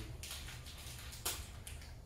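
Quiet room with a faint low hum and a single light click about a second in, from small metal cabinet hardware being handled.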